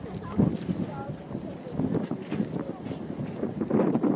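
Wind buffeting the microphone in uneven gusts, loudest just after the start and again near the end, with faint voices of people close by.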